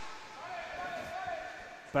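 Quiet sports-hall sound of an inline hockey game in play, with a faint voice calling out about half a second in.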